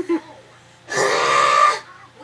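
A girl's loud, harsh, throaty vocal noise, burp-like, lasting about a second and starting about a second in.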